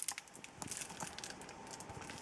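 Clear plastic wrap on a cutting mat crinkling as the mat is handled and lifted out of a cardboard box, a run of small irregular crackles.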